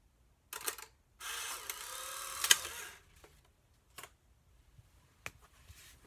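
Polaroid Spectra instant camera taking a picture: a brief shutter click, then its motor runs for about two seconds to drive the print out through the rollers, with a sharp click near the end of the run. A couple of light taps follow.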